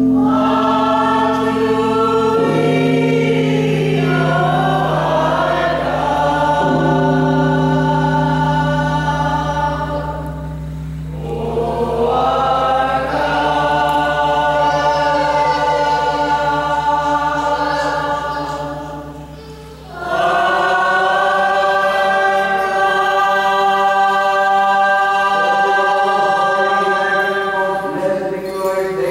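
A congregation singing a liturgical hymn together as a choir, the melody moving over a low note held steady beneath it. The singing pauses briefly between phrases about 11 seconds in and again near 20 seconds.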